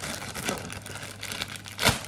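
Plastic poly mailer bag crinkling and tearing as it is ripped open by hand, in many short crackles with the loudest burst just before the end.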